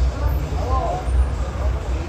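Several people's voices chatting and calling out in the street over a strong, uneven low rumble.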